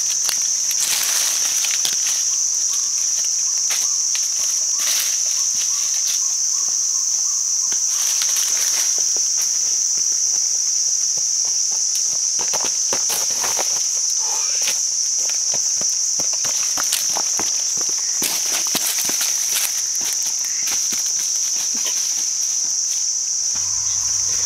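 A loud, steady, high-pitched insect drone from the forest, with irregular footsteps and rustling on a dry, leaf-strewn trail.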